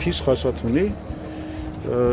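A man speaking Armenian in an interview, pausing on a briefly held hesitation sound, over a low steady hum.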